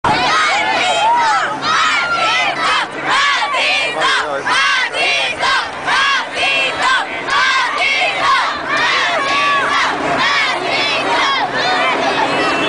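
A large crowd of women and children shouting and screaming in high voices, many calls overlapping without a break.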